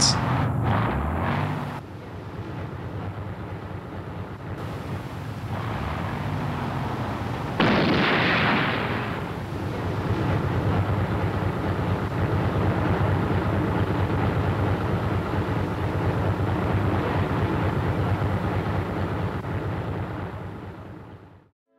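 Battle noise on an old film soundtrack: a continuous rumbling din with a sudden louder blast about eight seconds in.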